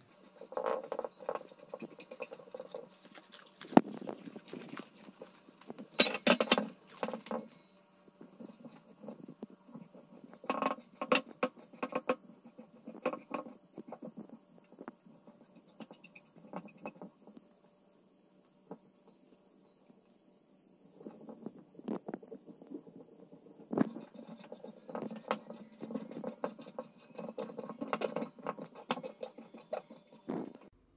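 Fingers rubbing and scraping old emery-paper glue residue off a bare metal grinding disc, rolling it up in irregular bursts of short strokes, with a quiet pause of a few seconds past the middle.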